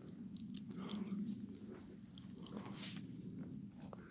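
Footsteps crunching over twigs and litter on a forest floor, with scattered small cracks over a low, steady rumble.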